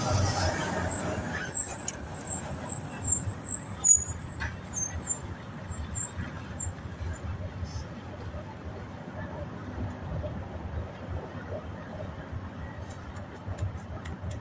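Outdoor ambience: a steady low rumble like distant road traffic, with brief high chirps in the first few seconds and a single sharp click about four seconds in.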